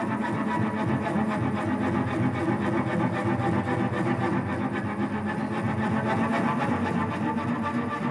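Solo cello bowed in free improvisation: a steady drone full of overtones, with a fast, rough pulsing grain running through it.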